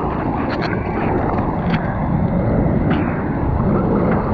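Sea water sloshing and splashing right against a waterproof action camera riding just above the surface on a bodyboard, with wind on the microphone and a few sharp splash ticks.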